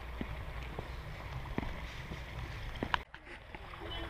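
Faint outdoor ambience: a steady low rumble with a few light clicks. It cuts out abruptly for about half a second near three seconds in, then comes back.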